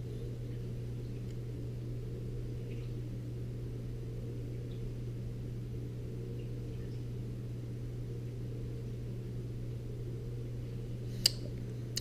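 Steady low room hum, like a fan or appliance, holding one level with no other activity; a single short click near the end.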